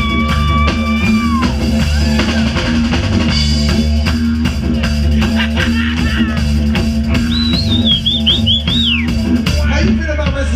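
A live band playing an instrumental groove on drum kit, bass and electric guitar over a steady low drone. A held high lead note bends up in the first second, and a fast wavering high lead line comes near the end.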